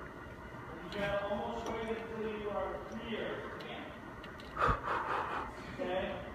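Indistinct voices talking in the background, then a single thump about three-quarters of the way through as a gymnast jumps up into support on the parallel bars, followed by a short breath.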